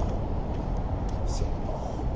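Steady low rumble of outdoor city street ambience with distant road traffic.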